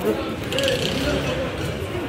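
Voices of people in a busy street, with a clicking, rattling mechanical noise.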